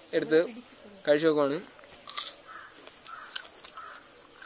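A bird calling faintly about four times in quick succession, in the second half after a few spoken words.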